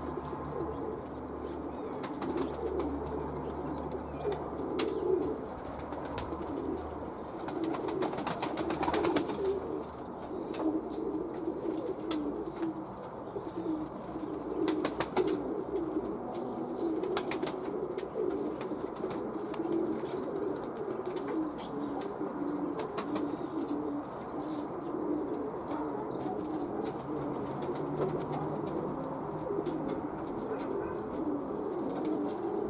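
Pigeons cooing continuously in a low, overlapping chorus, with a common starling's short gliding whistles and bursts of clicking over the top.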